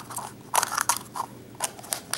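Plastic toy packaging crackling and clicking in the hands as a squishy figure is worked out of its plastic capsule: a run of sharp, irregular crackles, loudest about half a second in.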